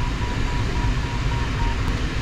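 Steady rush of airflow in a glider cockpit, with a variometer's audio beeping at one steady pitch about four times a second until just before the end. The beeping is a glider vario's climb signal: the glider is in rising air.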